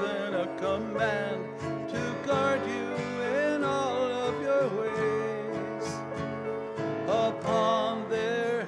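A hymn sung by a single voice to acoustic guitar accompaniment.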